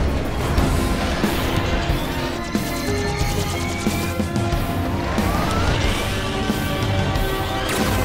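Action-show soundtrack: dramatic music under mechanical sound effects of giant robot vehicles (Zords) deploying from a hangar. Several rising whooshes and a few metallic crashes, the loudest crash near the end.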